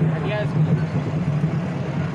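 Steady low engine drone from the vehicle carrying a parade tableau float, with crowd voices over it.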